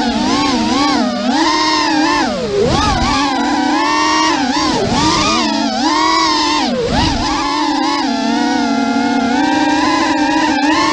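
Racing quadcopter's EMAX 2600kV brushless motors and three-blade props whining from the onboard camera, the pitch rising and falling constantly with the throttle. It drops sharply three times, about two and a half seconds in, at five seconds and at seven seconds, as the throttle is chopped.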